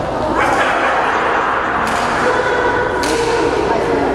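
Badminton rackets striking a shuttlecock in a rally: two sharp hits about a second apart, the second about three seconds in, echoing in a large hall.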